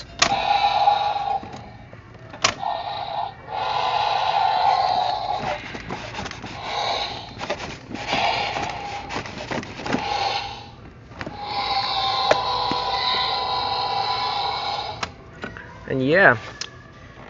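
Mattel Jurassic World Thrash and Throw Tyrannosaurus rex toy playing its electronic roar sound effects through its small built-in speaker, in a run of separate roars of one to three seconds each as its tail is worked.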